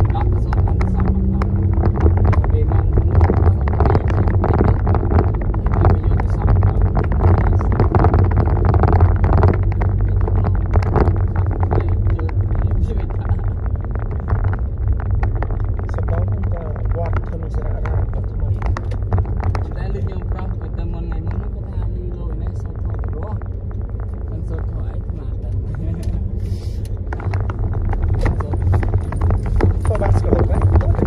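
Car cabin road noise from driving on an unpaved dirt road: a steady low rumble with frequent small knocks and rattles from the bumpy surface.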